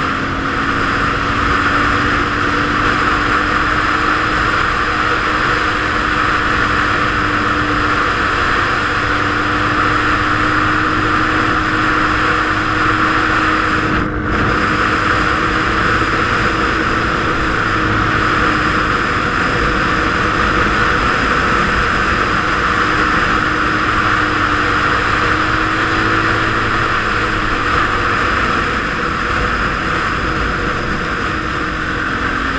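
Suzuki DRZ400SM's single-cylinder four-stroke engine running at a steady cruising speed under loud wind rush on a helmet-mounted microphone. The engine note rises slightly at first and then holds. There is a brief break about halfway through.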